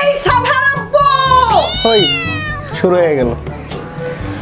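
A single cat-like meow, one long call that rises and then falls in pitch, over background music.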